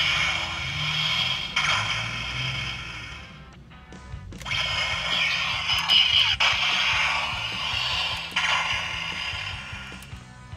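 Bandai Gokai Gun toy blaster playing its electronic sound effects through its small speaker: two long hissing blasts. The first fades out about three and a half seconds in, and the second starts with a click just after four seconds.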